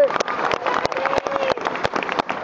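Audience applauding, with one person's hands clapping close to the microphone in sharp, irregular claps, and a voice cheering over it.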